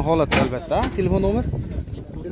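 A man speaking, with one sharp bang about a third of a second in.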